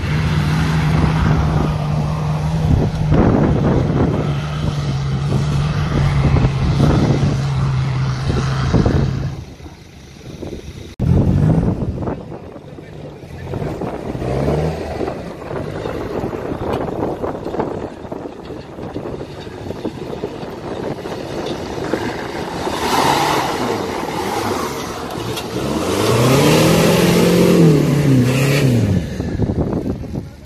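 Off-road 4x4 engine working under steady load as it climbs a steep dirt hill track, a held drone for about nine seconds. After a cut, more 4x4 engines work in the mud, and near the end one revs up and drops back.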